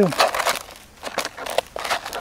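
A roll of KK19XW sanding cloth being unrolled over the ground, crinkling and rustling irregularly, with a quieter moment about a second in.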